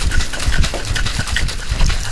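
Metal cocktail shaker shaken hard without ice (a dry shake), the liquid sloshing back and forth inside the sealed tins in quick, even strokes about four or five times a second. The dry shake aerates the egg-white-style mix before ice goes in.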